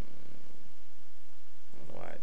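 A steady low hum runs throughout. Under it, a person's voice makes a short murmur at the start and comes in again near the end.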